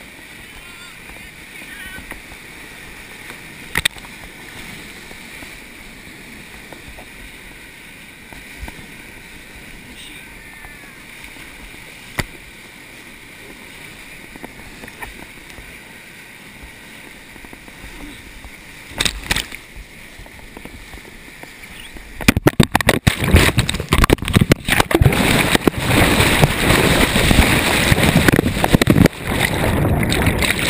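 Whitewater rushing steadily around a raft below a waterfall drop, with a few sharp knocks against the camera or boat. About 22 s in the camera goes under the water after the raft flips, and the sound turns into a much louder, dense churning and crackling of turbulent water and bubbles.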